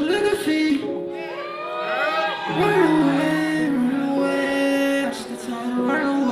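Live hip-hop concert music: a sung vocal with long held and gliding notes over a backing track.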